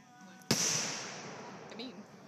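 A single sharp firework bang about half a second in, dying away over the next second.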